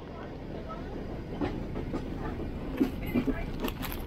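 Passenger train carriage interior: a steady low rumble of the moving train, with a few short sharp clicks or knocks.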